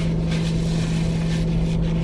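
Steady low hum of a car running while parked, heard inside the cabin.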